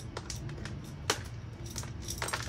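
Gritty bonsai soil ticking and crackling as a root ball is picked apart with a pointed tool over a plastic tub, with a few sharp clicks, the loudest about a second in, over a low steady hum.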